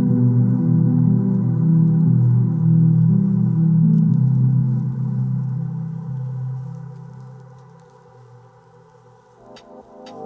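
Korg Volca synthesizers holding a low, sustained ambient chord that slowly fades out over several seconds. About nine and a half seconds in, a new synth part with sharp clicks begins.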